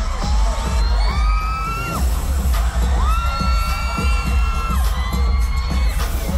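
Loud live pop music with a heavy bass beat playing through a concert sound system, with audience members' high-pitched screams held over it three times in a row.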